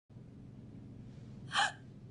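A woman's short, sharp gasp of surprise about one and a half seconds in, over a faint low hum.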